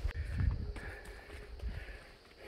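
Footsteps crunching on a dirt and leaf-litter bush track, irregular steps over a low rumble that is loudest about half a second in.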